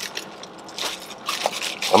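Tape being peeled off a thin plastic bag, the plastic crinkling and rustling in a few short, scratchy bursts.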